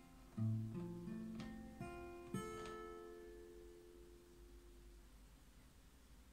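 Acoustic guitar playing the closing phrase of a song: a handful of plucked notes, then a last chord about two seconds in that rings on and fades away.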